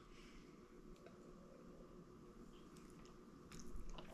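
Near silence: room tone with faint sipping sounds, and a few soft knocks near the end as a glass is lowered to the counter.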